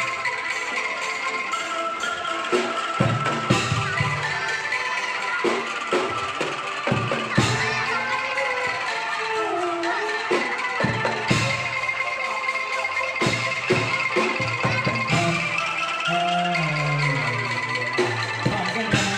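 Traditional West Javanese angklung ensemble playing: bamboo angklung and a struck bamboo xylophone sound in a continuous tuned, woody melody over a steady percussive beat.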